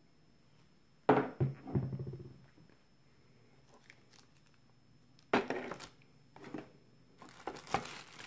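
Clear plastic packaging bag crinkling in short bursts as a hand handles a bagged dial indicator, after a sharp handling sound about a second in.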